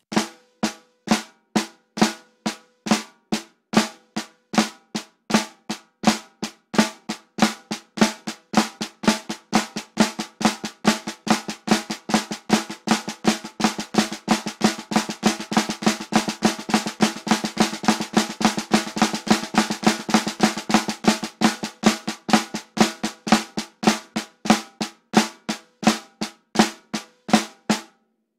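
Snare drum played with sticks: the inverted flam tap rudiment, an inverted paradiddle sticking with a flam every two beats and accents. It starts slowly, speeds up to a fast, even run around the middle, then slows back down.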